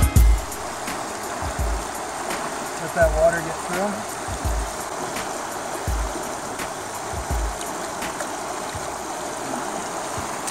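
Shallow river running over gravel, a steady rushing, with low thumps on the microphone about every second and a half.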